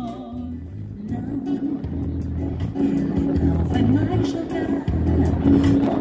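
Live acoustic guitar and low bass accompaniment playing an instrumental passage between songs of a medley, thinning out about a second in and then picking up a steady groove again.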